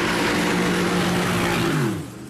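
Supercar engine held at high, steady revs during a launch with the rear tyres spinning, a hiss of tyre noise over the engine note. Near the end the revs fall away.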